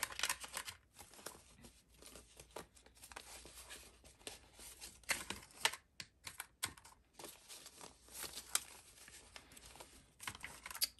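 Paper banknotes rustling and crinkling as a stack of bills is flicked through by hand and laid down, a run of soft, crisp paper sounds with a few sharper crackles about halfway through.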